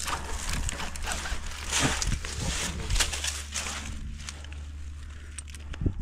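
Climbing rope and gear rustling and scraping against tree bark, with scattered clicks and one sharp knock near the end, over a steady low rumble.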